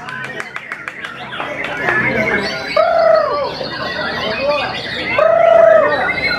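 White-rumped shama (murai batu) singing with other songbirds: a quick run of sharp clicks in the first second, then varied chirping phrases and two long, arching whistles about three and five and a half seconds in, the second the loudest.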